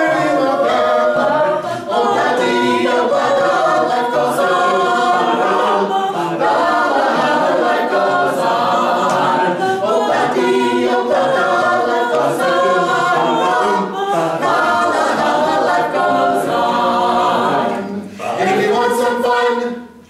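Mixed a cappella ensemble of seven voices, men and women, singing in harmony with no instruments. The singing dips briefly just before the end.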